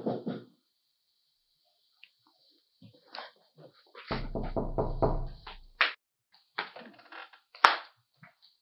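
A woman laughing happily in a run of short, evenly pulsed bursts lasting about two seconds, with a brief vocal outburst at the start and a few short sounds after the laugh. A single sharp tap comes shortly before the end.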